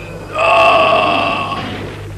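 A man's long anguished cry, held on one pitch, starting a moment in and fading away after about a second and a half.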